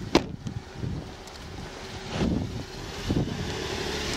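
A car door slams shut just after the start, then a car runs nearby with wind buffeting the microphone.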